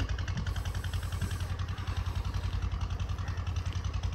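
An engine idling with a low, fast, even putter that keeps the same speed.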